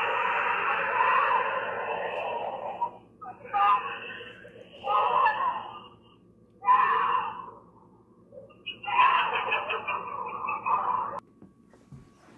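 Harsh screaming and yelling played back through a small phone speaker, thin and tinny: one long stretch for the first three seconds, then several shorter outbursts, the last lasting about two seconds and cutting off abruptly near the end.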